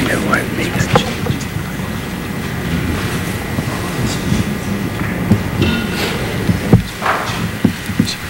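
Low, indistinct murmur of voices and room noise in a hearing room, picked up by the table microphones. A few sharp knocks or bumps come near the end.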